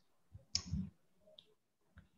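Faint clicking: a sharp click about half a second in and a smaller one later, over quiet room tone.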